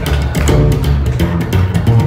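Live band music led by an upright double bass playing a run of deep, quickly changing notes, over a fast steady beat of sharp hits.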